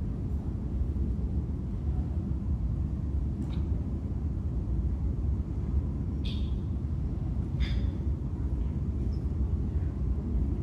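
Steady low room rumble, with a few brief faint sounds from the room about three and a half, six and seven and a half seconds in.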